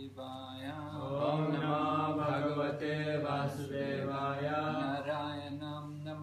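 Sanskrit mantra chanted, louder from about a second in until near the end, over a steady low hum.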